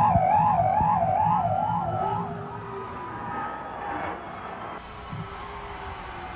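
High electric guitar feedback warbling up and down in pitch like a siren, about two to three wobbles a second. After about two seconds it fades into quieter held tones.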